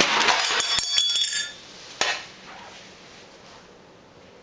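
Close handling noise: a loud second and a half of rustling and clinking clatter, then a single sharp click about two seconds in, after which it goes much quieter.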